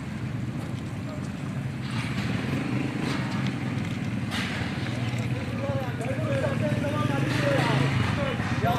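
A steady low rumble runs throughout, and people's voices can be heard talking from about five seconds in.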